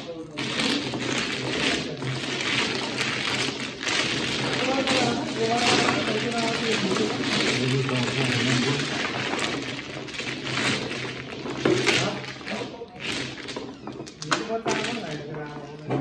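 Mahjong tiles being shuffled by hand on a mat-covered table: a continuous dense clatter of tiles knocking and sliding against one another.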